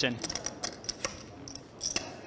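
Clay poker chips clicking at the table, a scattered run of small sharp clicks as chips are handled and riffled.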